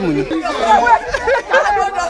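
Several people talking over one another, with no other sound standing out above the voices.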